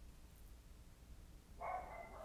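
Near silence: room tone, with a brief, faint pitched sound near the end.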